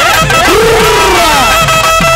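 Tamil folk band instrumental: a nadaswaram holds a long note over a drum rhythm whose strokes bend in pitch, about two beats a second. A long rising-and-falling swoop sounds about half a second in.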